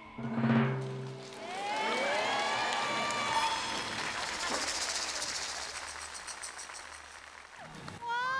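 A short dramatic music hit with a low drum, then studio audience applause with music underneath, fading toward the end.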